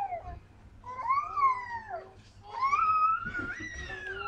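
A woman wailing in long, high-pitched cries that rise and fall in pitch: the tail of one cry, then a cry of about a second, then a longer one near the end.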